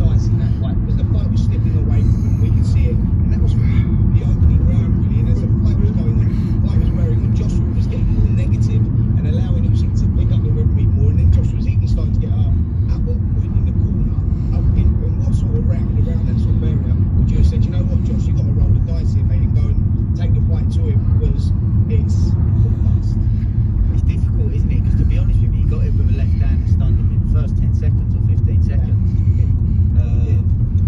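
Steady low rumble of road and engine noise inside a moving taxi's cabin.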